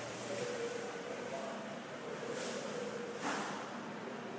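Steady background noise of a large, nearly empty indoor mall, with faint held tones underneath and a short swell of noise about three seconds in.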